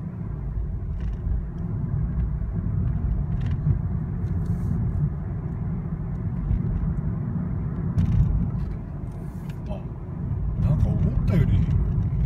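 Cabin sound of a Mazda Demio XD under way: a steady low rumble from its 1.5-litre turbodiesel and the road.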